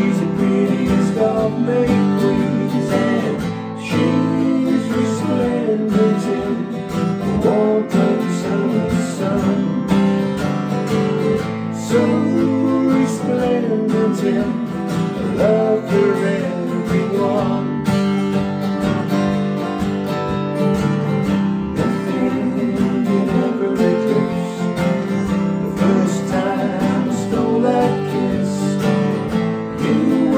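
Two acoustic guitars strummed together, accompanying a man singing a song.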